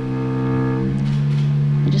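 Solo cello bowing a long, low sustained note that swells and grows stronger about a second in, opening the song under the spoken introduction.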